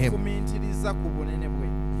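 Steady electrical mains hum through the microphones and sound system, a stack of even tones that holds unchanged, with faint speech traces behind it.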